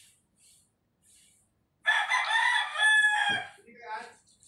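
A rooster crowing once, a single call of about a second and a half, starting about two seconds in. A short low thump comes near the end of the call.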